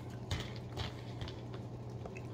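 A few faint, short clicks and taps over a steady low hum.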